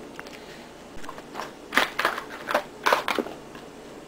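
Cats batting and biting at loose small brass rifle cartridges and their box: a quick run of about six sharp clicks and scrapes, starting about a second in and stopping a little after three seconds.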